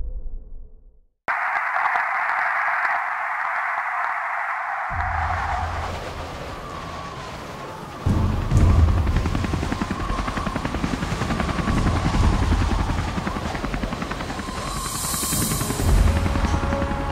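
Soundtrack music. About a second in, a steady airy hiss cuts in suddenly; from about eight seconds, a helicopter's rotor chops rapidly and evenly under the music.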